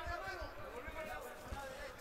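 Faint, indistinct voices of spectators and cornermen shouting around a kickboxing ring, with a few soft low thuds.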